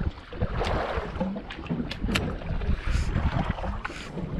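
Wind buffeting the microphone over the steady noise of a boat at sea, with several sharp clicks from the baitcasting jigging reel and rod being worked.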